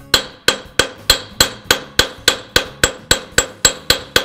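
A 20 oz jeweler's sledge hammer striking a doubled 4 mm brass rod on a cast-iron bench anvil. The blows come in a steady, even run of about three a second, each with a short metallic ring. The heavy hammer is let drop onto the brass to forge it into a taper.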